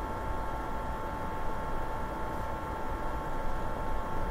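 Steady recording background noise: a low hum and hiss with a constant high-pitched whine, and no other sound.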